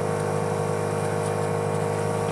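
Smoke machine running for a smoke test of the engine's intake, a steady even hum that does not change. It is pushing smoke into the intake to find unmetered air, which is escaping at a vacuum leak where the intake bolts to the head.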